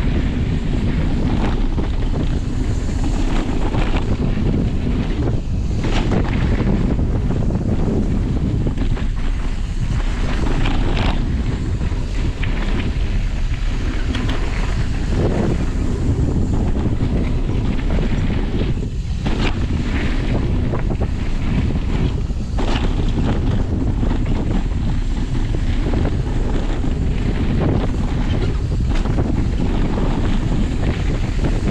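Wind buffeting an action camera's microphone on a mountain bike moving fast downhill, a steady loud rush, with tyre noise on the dirt trail and scattered knocks and rattles from bumps.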